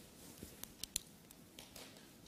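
Faint scattered ticks and scratches of pens on paper and paper being handled, as people write on small sheets of flash paper.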